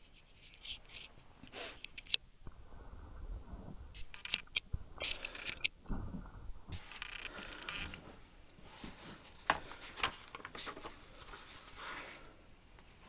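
Faint handling sounds of a hardcover book being opened and its paper pages turned: scattered soft scrapes, rustles and small clicks, with low bumps from a hand-held camera.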